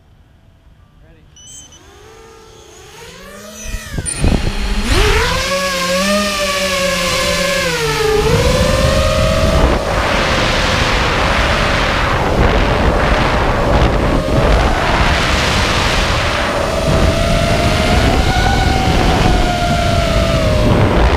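QAV210 FPV racing quadcopter's brushless motors and propellers, heard from its onboard camera: faint at first, then spooling up with a rising whine about three seconds in. From about four seconds it flies hard, a loud motor whine rising and falling with the throttle over heavy rushing wind noise.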